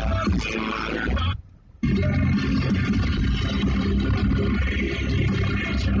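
Music playing from a car stereo, with guitar in it; it cuts out for about half a second a little over a second in, then starts again.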